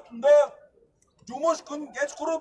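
A man speaking in short phrases, with a pause of about half a second near the middle.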